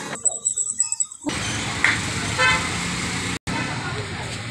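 Street traffic noise with a short vehicle horn toot about two and a half seconds in. This follows about a second of indoor shop sound that carries a fast, high-pitched beeping.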